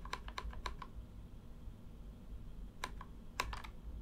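Computer keys tapped in short, sharp clicks: a quick run of about half a dozen in the first second, then a few more near the end.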